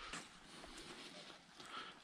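Very quiet outdoor ambience with faint footsteps on a path of dead leaves.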